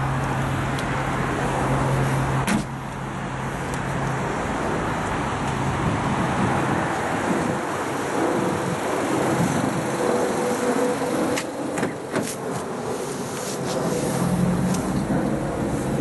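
Steady outdoor road-traffic noise. About two and a half seconds in, a Vauxhall Mokka's tailgate is shut with a single thump. A few sharp clicks around twelve seconds in fit its rear door being unlatched and opened.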